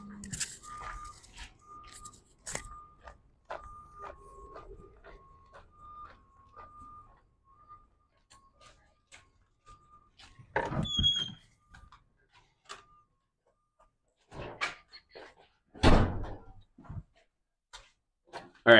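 Footsteps walking across a concrete floor, then a door opening with a brief squeal about eleven seconds in, followed by two heavy thuds from the door near the end.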